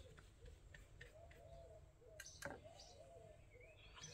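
Near silence, with faint distant bird calls throughout and two soft clicks about two seconds in.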